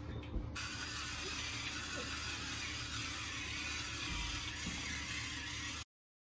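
Pepper grinder grinding black pepper over sweet potato wedges: a steady gritty grinding that starts about half a second in and cuts off suddenly just before the end.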